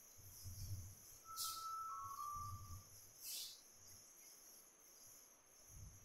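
Faint marker strokes on a whiteboard: two short scratchy strokes, about one and a half and three and a half seconds in, with soft low thuds and a faint steady tone that steps down slightly in pitch in between, over a steady high hiss.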